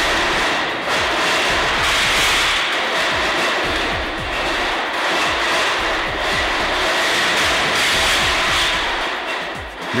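Continuous loud rumbling and rattling of loaded steel pallet racks being shaken on an earthquake shake table, at twice the qualification-level simulation, with music underneath.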